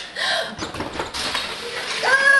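Feet running and sliding along a wooden hallway floor, a scuffing hiss that builds from about a second in, with faint voices early on.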